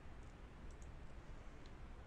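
A few faint computer mouse clicks over a low, steady background hum and hiss.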